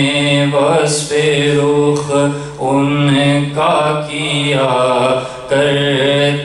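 A man's voice chanting unaccompanied into a microphone, in long held notes with melodic turns and brief breaths between phrases: a devotional Islamic recitation.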